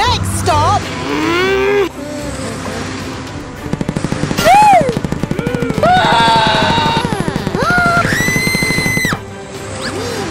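Cartoon-style soundtrack: high, squeaky, voice-like sliding glides over music. From about four seconds in, a fast, even stuttering rattle runs under it, and a held high whistle-like tone comes just before the rattle stops near the end.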